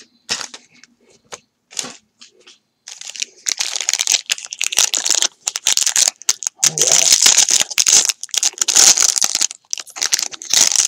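Foil baseball card pack wrapper being torn open and crinkled by hand: a few light rustles and clicks at first, then dense, loud crinkling from about three seconds in.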